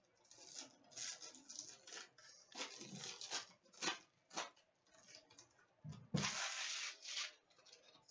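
Hockey card box and its pack being opened by hand: faint rustling and tearing of packaging in short irregular bursts, with a longer stretch of tearing about six seconds in.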